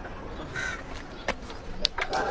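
A crow cawing once, briefly, about half a second in, over quiet outdoor background, with a couple of small clicks later on.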